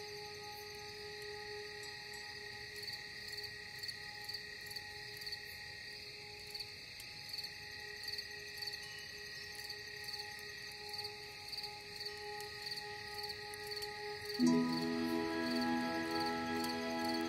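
Crickets chirping in a steady, evenly repeating pattern over soft sustained ambient meditation music. Near the end a new, louder chord comes in.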